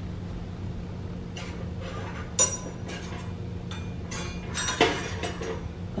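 Metal cutlery clinking and clattering a few times as a different knife is picked out, the sharpest clink about two and a half seconds in and a small cluster near the end, over a steady low hum.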